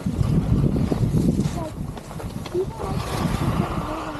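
Wind buffeting the camera microphone in an uneven low rumble, with skis sliding and scraping on snow. A hiss comes in about three seconds in.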